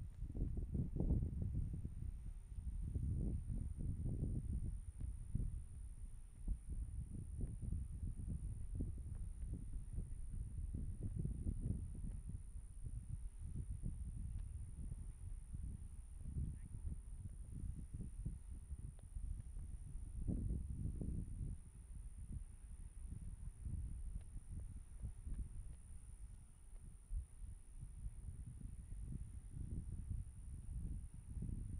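Wind buffeting an outdoor microphone: an uneven low rumble that rises and falls in gusts, with a faint steady high-pitched whine above it.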